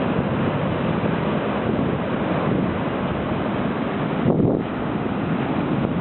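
Atlantic surf breaking over beach rocks and washing up the sand in a steady rush, with wind buffeting the microphone and a stronger low gust about four seconds in.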